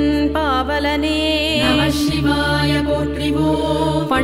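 Tamil devotional chant to Shiva sung by a woman, in an ornamented melodic line over a steady drone and instrumental accompaniment.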